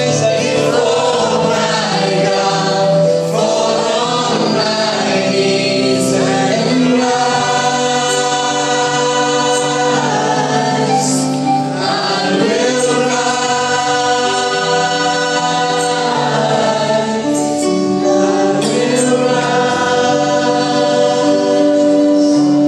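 A man and a woman singing a Christian worship song together, with another male voice backing them, over live keyboard and acoustic guitar; the voices hold long notes.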